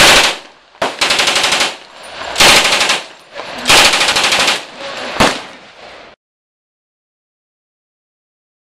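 M1A1 Thompson submachine gun firing short bursts of full-auto .45 ACP: four quick bursts, each of several rapid shots, over about five seconds. Its sound cuts off abruptly about six seconds in.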